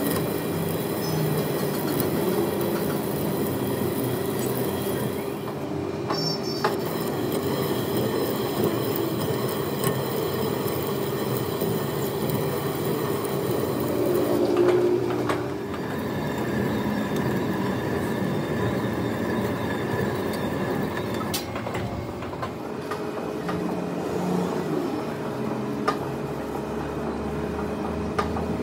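Metal lathe running steadily while a single-point tool cuts a screw thread into a steel truck axle shaft, the drive humming under the hiss and whine of the cut.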